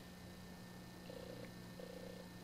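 A cat purring faintly in two short stretches, about a second in and again near the end, over a steady low hum.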